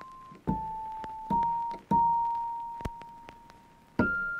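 Background music: a slow piano melody, three single notes struck in the first two seconds, the last left to ring and fade.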